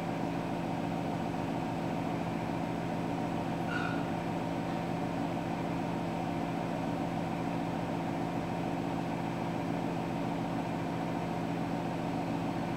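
Steady low mechanical hum, an even drone that does not change.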